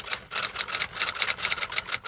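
Rapid typewriter-like key clatter, about ten sharp clicks a second in an uneven rhythm: a typing sound effect laid under a still image.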